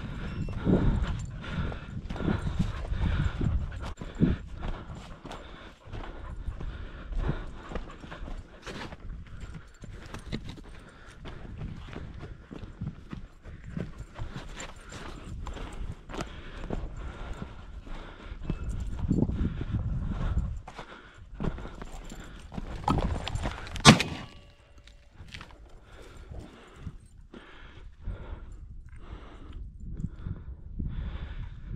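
Footsteps crunching through dry sagebrush, with brush rustling and low rumbles on the microphone. About 24 seconds in, a single sharp, loud crack: a shotgun shot at a flushed game bird.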